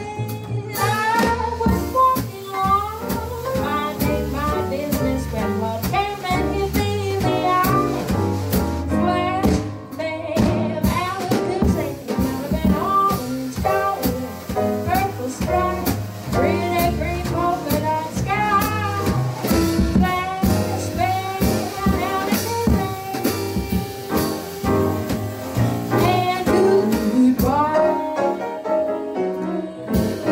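Jazz trio playing live: upright double bass, piano and drum kit played with sticks, with a woman singing at the microphone.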